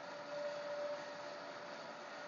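Faint, steady hum and hiss of a running DC shunt motor as the field rheostat brings it up toward its rated 1500 rpm, with a faint thin tone for about half a second shortly after the start.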